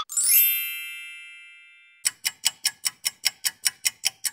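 Title-intro sound effects: a rising shimmer that lands on a bright chime, which rings and fades over about two seconds. It is followed by a quick, even run of clicks, about six a second.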